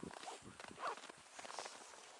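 Faint, irregular crunching footsteps in snow, with a soft hiss underneath.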